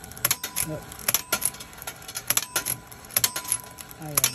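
A string of sharp metallic clicks and clacks from a 1939 ABT Fire and Smoke penny arcade target pistol game, its spring-driven clockwork spinning the reels while the pistol fires a ball at the targets. The shot misses.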